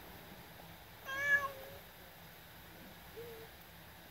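A domestic cat meows once: a single short, wavering meow about a second in.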